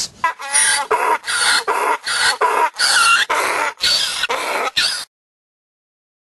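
A run of about a dozen short, breathy vocal bursts, two or three a second, that cuts off suddenly about five seconds in.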